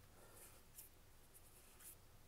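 Near silence with two faint, brief brushing sounds about a second apart: Magic: The Gathering cards sliding against one another as they are flipped through by hand.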